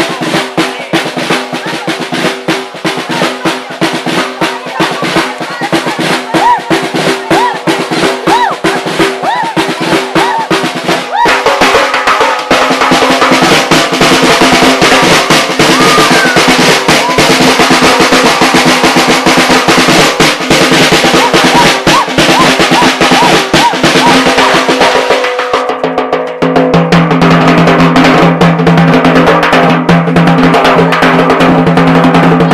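Live drums, including a chrome snare drum, playing fast dense rhythms and rolls together with music. The drumming gets louder and fuller about eleven seconds in, and a deeper steady tone joins near the end.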